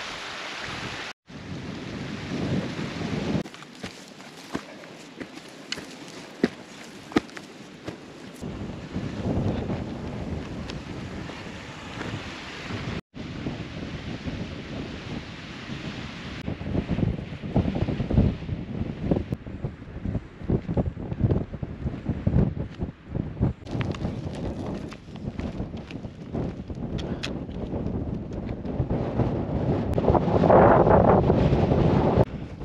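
Wind buffeting the microphone in gusts, a rumbling, rising-and-falling noise with scattered small knocks, cutting out for an instant twice.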